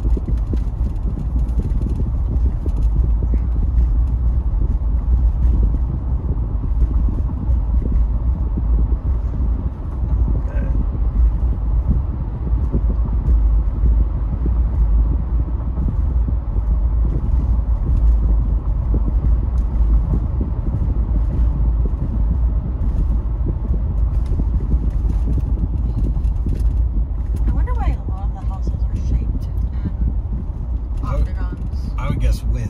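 Car cabin noise while driving at low speed on a paved street: a steady low rumble of engine and tyres heard from inside the vehicle.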